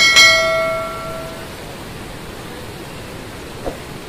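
A single metallic strike ringing out like a bell, its several tones fading over about a second and a half, over a steady background hiss of noise.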